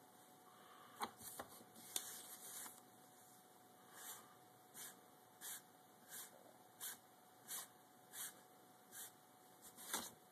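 Faint, quiet sounds of a cat playing with a small crumpled paper ball on a wooden desk: a few light taps and crinkles early on, then a run of soft, regular rasps a little under a second apart while the cat works at the paper with its head down.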